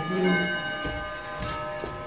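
Brass statue and metal table top ringing after the statue is set down on the plate: several clear bell-like tones held together, slowly fading, with a few faint knocks as the statue is shifted.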